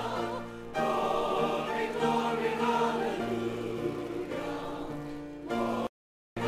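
Church choir singing, the voices holding long chords that shift every second or so. The sound cuts out suddenly just before the end.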